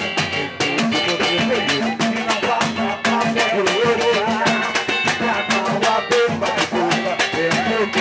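Live samba batucada: surdo bass drums and hand percussion playing a dense, driving rhythm with a cavaquinho, and a man singing through a microphone and PA.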